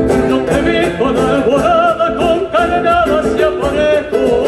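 Male singer singing a folk song live into a microphone over acoustic guitar, holding long notes with a wavering vibrato from about a second in.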